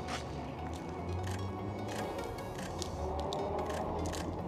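Quiet background music with a steady low bass line, plus a few faint clicks over it.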